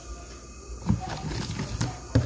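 Wooden spoon stirring thick tapioca-and-coconut cake batter in a plastic bowl. The irregular soft knocks and scrapes start about a second in.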